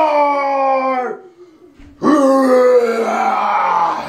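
A man's voice letting out two long, drawn-out cries without words, play-acting a transformation into the Hulk; the first lasts about a second, and the second, from about two seconds in, is longer and rougher, its pitch sinking.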